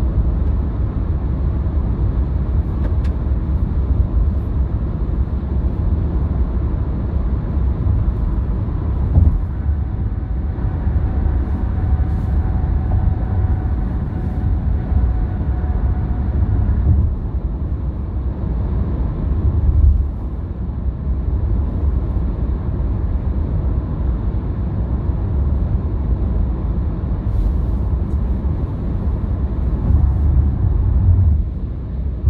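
Car travelling at expressway speed: a steady low rumble of tyre and road noise. A faint thin whine joins it about ten seconds in and cuts off suddenly a few seconds later.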